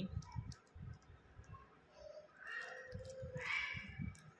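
Clear plastic polythene sleeves holding drawings rustling and clicking as hands leaf through a stack of sketches. A faint pitched sound lasting about a second and a half comes in from a little over two seconds in.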